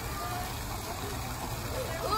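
Indistinct voices of people talking, faint under a steady rush of background noise.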